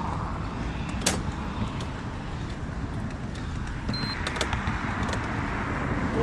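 Steady rolling rumble of a recumbent trike moving along a concrete path, with a few sharp clicks and a brief high chirp about four seconds in.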